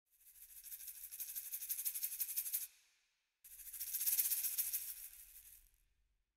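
Sampled shaken rattle percussion from the Epic World virtual instrument, played as two notes. Each note is a run of fast rustling ticks, high in pitch and about two and a half seconds long. The first swells and cuts off; the second starts strongly and fades.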